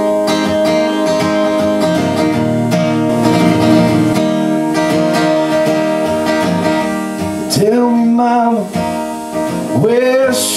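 Solo steel-string acoustic guitar playing a song's intro live, with a man's singing voice coming in about seven and a half seconds in.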